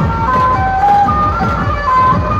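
Dhumal band music played loud: a held lead melody stepping from note to note over a dense, fast drum beat.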